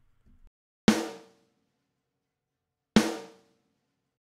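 Two isolated snare drum hits from a multitrack drum recording, about two seconds apart, each a sharp crack that rings out fully for about half a second with nothing between them.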